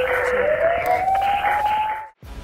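Siren-like sound effect from a TV programme's title sting: a single tone over a hiss that dips slightly, then slowly rises in pitch and cuts off suddenly at the end.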